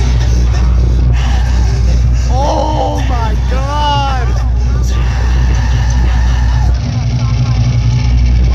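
Loud concert PA playing a deep, steady droning intro with no beat. A voice calls out with gliding pitch between about two and four seconds in.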